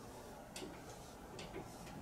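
Dry-erase marker drawing lines on a whiteboard: a few faint, short strokes.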